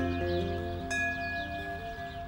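Brass hand bell struck once about a second in, its clear tones ringing on, over soft background music.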